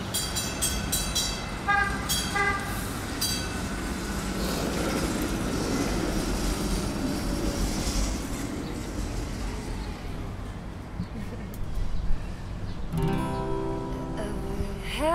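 Street traffic with a vehicle passing, marked in the first three seconds by several short, sharp ringing tones. Near the end, a guitar starts playing the song's opening.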